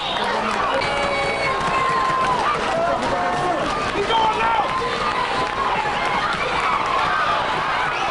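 A crowd of spectators in the stands talking and calling out, many voices overlapping with no one voice standing out.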